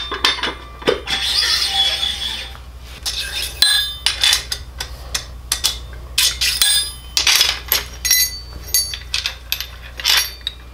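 Steel parts clinking and scraping as sprockets, a brake rotor and hubs are slid along a steel go-kart live axle: many short metallic clinks with a brief ring, and a longer scrape about a second in. A steady low hum runs underneath.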